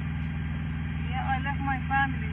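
Steady low hum of an idling car engine, picked up by a police body camera's microphone. A faint, quiet voice speaks about a second in.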